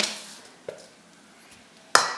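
A light tap about two-thirds of a second in, then one sharp clink of a metal spoon against a stainless steel mixing bowl near the end; otherwise quiet.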